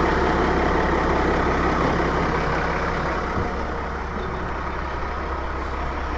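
Cummins 8.3-litre C-series 12-valve diesel in a Peterbilt 330 semi, fitted with compound turbos, running steadily at idle.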